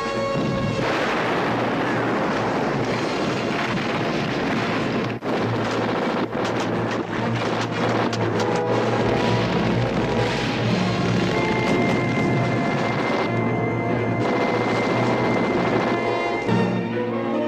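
Action-film battle soundtrack: explosions and gunfire over a music score, with a run of rapid blasts in the middle.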